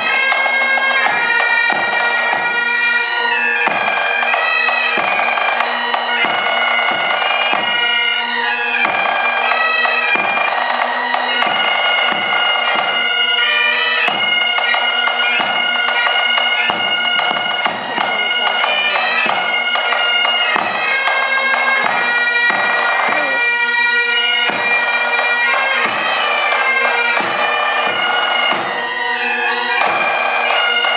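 Pipe and drum band playing: Highland bagpipes sound a tune over their steady drones, with a bass drum and snare drum beating time under it.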